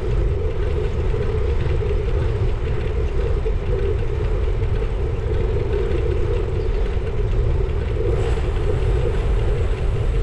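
Steady rumble of wind buffeting a bicycle-mounted camera's microphone while riding, with the even hum of the tyres rolling on tarmac.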